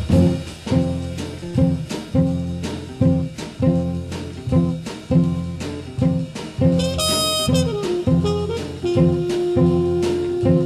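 Soul jazz from a small band with horn, bass and drums: the ensemble plays a run of short, punchy chords, and a single note is held from about nine seconds in.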